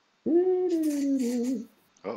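A man's drawn-out "whoa", about a second and a half long, falling slightly in pitch.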